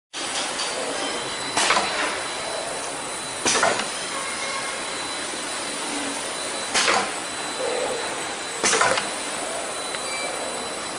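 Rotary K-cup capsule filling and sealing machine running with a steady mechanical noise, broken by four short, loud bursts of noise at uneven intervals.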